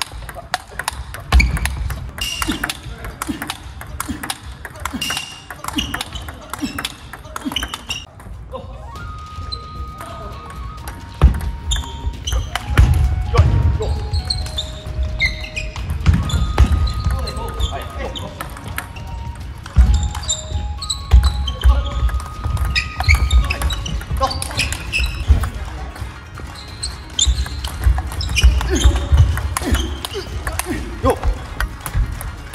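Table tennis rallies: the ball clicking sharply off the rackets and the table in quick strings of hits, point after point, with thuds from the players' footwork.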